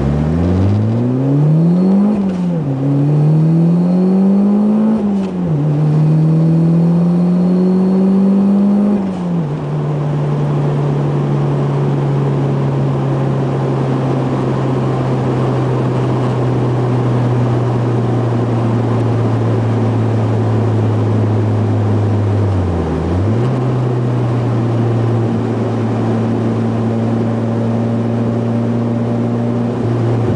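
Turbocharged car engine heard from inside the cabin, accelerating hard through the gears. The engine note climbs and drops back at each upshift, about 2, 5 and 9 seconds in, then settles into a steady highway cruise with a brief dip in revs later on.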